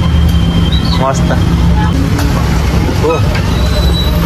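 City bus engine running with a steady low hum, heard from inside the passenger cabin, with brief snatches of voices.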